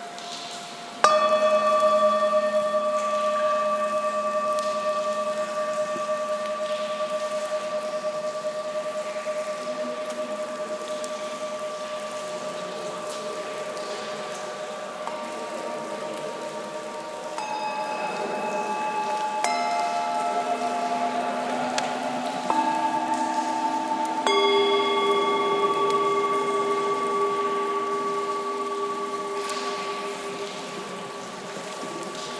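Antique Himalayan singing bowls being struck. One bowl is struck about a second in, and its several steady tones ring on and slowly fade for many seconds. From about halfway through, several more bowls of different pitches are struck one after another, their tones overlapping as they ring.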